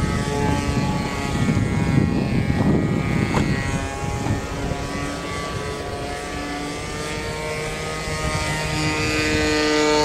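A steady motor drone made of several held tones that drift slowly in pitch, like a propeller aircraft's engine. A louder low rush of noise comes in between about one and a half and three and a half seconds in.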